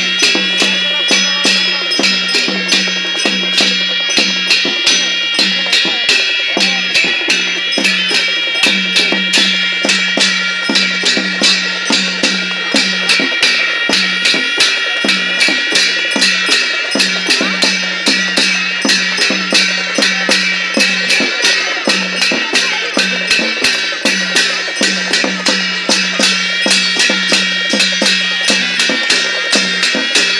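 Drums and ringing metal cymbals of a traditional Nepali dance ensemble play a fast, steady beat, about three to four strikes a second, without a break.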